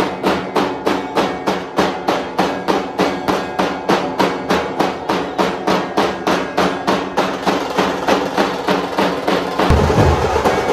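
Dhol-tasha band: several large dhol drums beaten with sticks in a fast, even beat of about three to four strokes a second. Deeper low strokes come in near the end.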